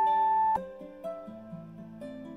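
A long, steady electronic timer beep that stops about half a second in, marking the change to the next workout interval, over soft plucked-guitar background music.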